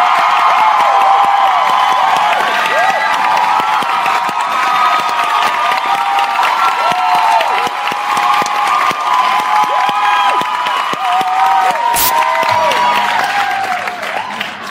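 Theatre audience cheering over applause, with many high-pitched shrieks and whoops overlapping. A single sharp knock comes near the end.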